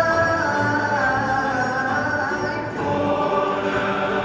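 Cape Malay male choir singing, a lead voice holding long notes with the choir behind, accompanied by acoustic guitars.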